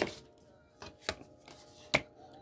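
Tarot cards being handled and laid on a table: a few light clicks, then a sharper snap near the end as a card is set down.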